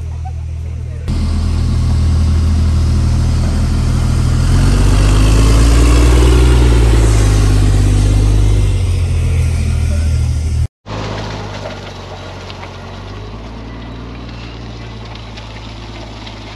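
Stryker M-SHORAD 8x8 armored vehicle's diesel engine and tyres as it drives close past, getting louder to a peak and then easing off. After a sudden cut, its engine is heard steadier and quieter as it drives away.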